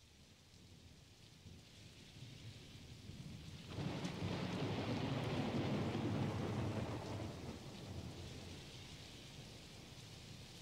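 Rain falling with a long roll of thunder. The thunder swells suddenly about four seconds in and slowly dies away. It is a recorded storm effect, not weather at the road.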